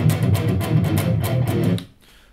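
Electric guitar playing a run of fast picked low notes in E minor pentatonic, which cuts off abruptly near the end.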